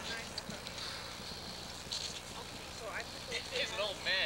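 Faint, unintelligible children's voices calling out in short high-pitched cries, over a steady hiss.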